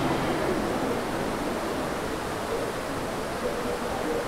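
Steady hiss of background room noise with no voice, easing slightly in the first second.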